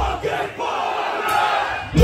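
Concert crowd shouting together in a break in the heavy metal music, after the band cuts out; the band crashes back in right at the end.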